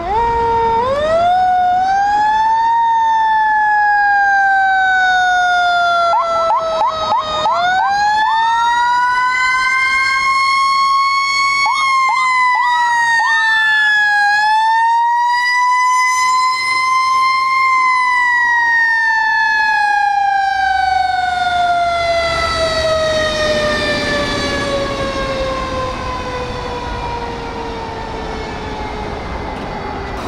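Ladder fire truck's siren wailing, winding slowly up and down several times and ending in a long, drawn-out fall in pitch, with short quick whoops twice. A low rumble from the truck rises in the last few seconds.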